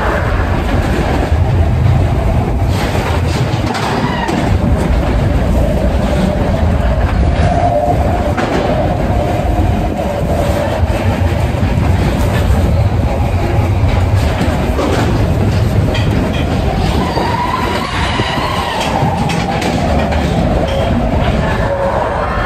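Matterhorn Bobsleds roller coaster car running along its tubular steel track: a loud, steady rumble of the ride in motion.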